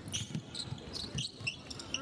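A basketball being dribbled on a hardwood court, several irregular bounces, with sneakers squeaking on the floor.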